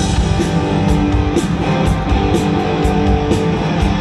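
Live rock band playing: electric guitar chords held over a steady drum beat.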